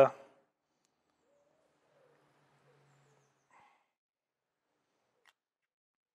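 Near silence, with two very faint small clicks, the first about three and a half seconds in and the second near the end.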